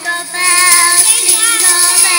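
Young preschool children singing together over a loud musical accompaniment, which comes in about a third of a second in.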